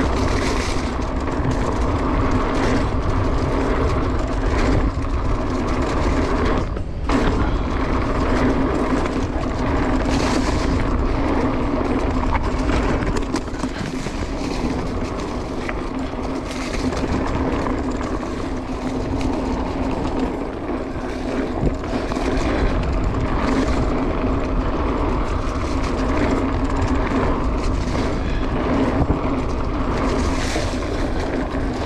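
Mountain bike rolling fast down a leaf-covered dirt singletrack: a continuous rumble of knobby tyres on dirt and leaves, with frequent small knocks and rattles from the bike over bumps.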